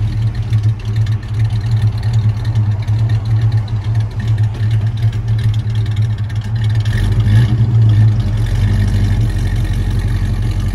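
1968 Dodge Charger R/T's V8 idling through its dual exhausts just after starting, a steady lumpy rumble, with the note swelling briefly about seven and a half seconds in.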